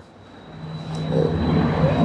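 Engine noise with a steady hum, swelling from faint to loud over about a second and a half.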